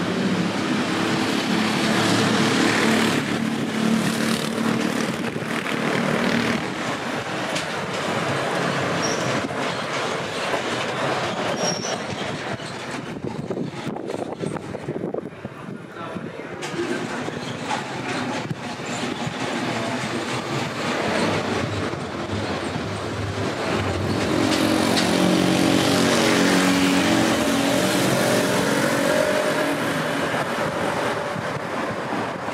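Motor traffic passing on a city street: engine drones and tyre noise, louder near the start and again near the end, with a quieter lull in the middle.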